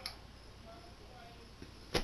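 Two sharp clicks over faint room hiss: a small one at the start and a much louder one near the end.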